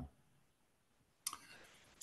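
Near silence, broken about a second in by a single sharp click of a computer mouse as the slide is advanced, with a little faint noise after it.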